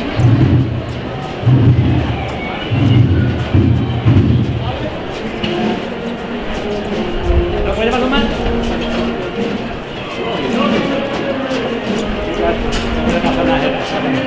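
Nearby voices talking for the first few seconds, then a banda de música (brass and woodwind band) comes in with a processional march melody in held, stepped notes.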